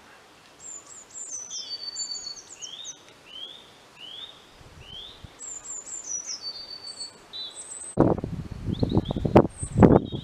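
Songbirds singing in a garden: repeated short rising chirps and high, quick phrases. In the last two seconds several loud, rough bursts come in, much louder than the birdsong.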